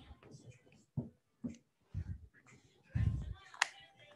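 Soft, low thumps and shuffling of a person shifting position on an exercise mat, with one sharp click near the end.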